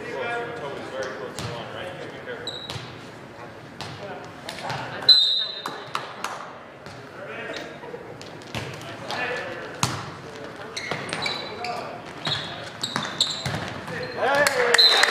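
Indoor volleyball match in a gymnasium: the ball thuds on the hardwood floor and off hands, with the voices of players and spectators echoing in the hall. A short, shrill referee's whistle sounds about five seconds in and is the loudest sound.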